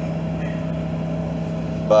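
Pickup truck engine running with a steady hum and a constant low drone, heard from inside the cab.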